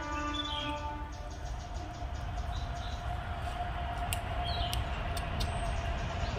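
Outdoor ambience: a low rumble under a long, steady distant tone, with a couple of short bird chirps and a few sharp clicks near the end.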